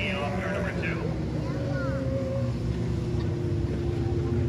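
Several small race-car engines running together as the cars lap a dirt oval, a steady drone whose pitch sags slightly, with voices over it.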